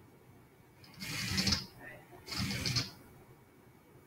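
Moorebot Scout robot's small electric drive motors and mecanum wheels whirring in two short bursts, about a second in and again near three seconds, as it drives off its charging dock.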